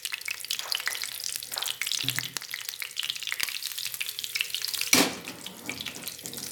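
Egg and bread batter sizzling in a little butter in a hot nonstick frying pan, with steady crackling and a spoon spreading and scraping the mixture across the pan. A brief louder rush of noise comes about five seconds in.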